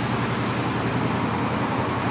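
A steady low mechanical drone, like an engine or machine running without change.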